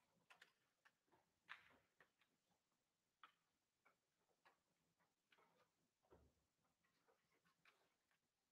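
Near silence in a concert hall: faint, scattered clicks and small knocks as the players settle between pieces, with no music playing.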